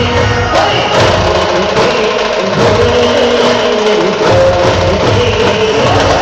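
Maharashtrian wedding brass band playing live: trumpets carry a sustained film-song melody over drums, which drop out for about two seconds in the middle.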